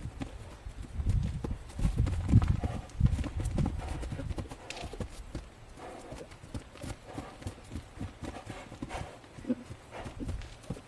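A horse's hooves thudding on grass as it trots around close to the handler. The hoofbeats are heavy and quick in the first four seconds, then lighter and more spaced.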